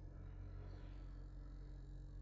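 Faint steady low hum from the vibration generator driving the string and from its signal generator.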